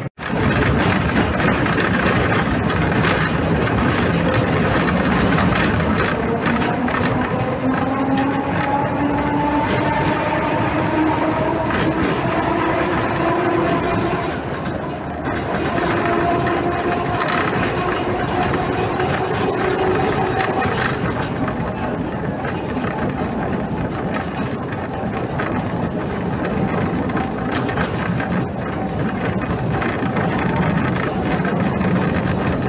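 Historic N3 tram under way: steady running rumble and rattle of the car body and wheels on the rails, with a whine from the traction motors and gears that climbs slowly in pitch as the tram gathers speed, then fades out about two-thirds of the way through.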